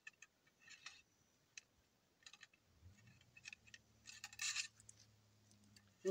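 Faint metallic clinks and short scrapes of a ramrod working inside the barrel of a muzzleloading shotgun, ramming down a wad wrapped around the shot; the clinks come most thickly about four seconds in.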